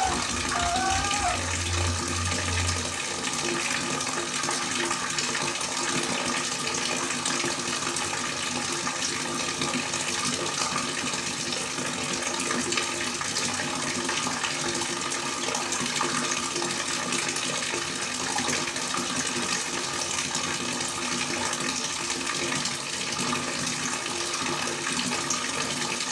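A thin stream of water falling steadily into a pond and splashing on the surface, an even rushing sound without a break.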